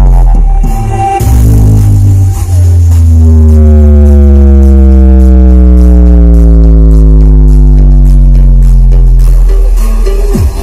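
Dance remix music played very loud through a huge sound-system speaker stack: heavy, steady bass under a buzzing synth drone that slides slowly down in pitch over several seconds. The beat comes back right at the end.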